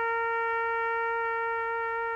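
Trumpet music: one long note held steady in pitch, easing slightly in level near the end.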